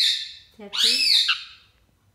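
Indian ringneck parakeet giving two loud, harsh screeches: the first fades out just after the start and the second comes about half a second in. These are the calls of an agitated bird.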